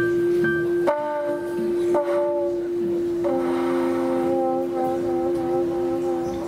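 Live jazz quintet playing, with trombone. One low note is held steady the whole time while higher notes change above it about one, two and three seconds in.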